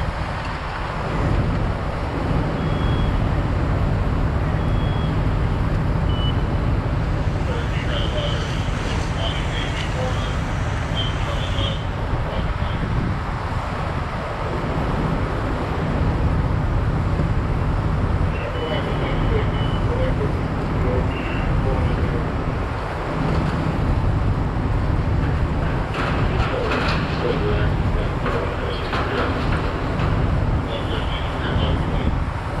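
Steady low rumble of fire apparatus engines running on the fireground, with a few short high beeps and faint, indistinct voices over it.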